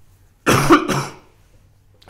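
A man's single short, loud cough, about half a second in.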